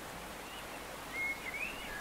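Steady low background hiss in a pause between speech, with a faint thin high whistle that holds briefly and then rises and falls in the second half.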